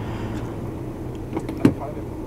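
Low steady hum of an idling engine heard inside a stationary vehicle's cab, with a short knock about one and a half seconds in.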